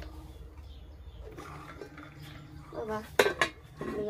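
Aluminium lid set down onto an aluminium cooking pot: a metal-on-metal clatter of a few ringing clinks about three seconds in, with another clink just before the end.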